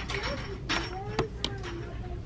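A few light clicks and rustles of a plastic-wrapped cardboard sign being slid back into a cardboard display box, over a faint voice in the background.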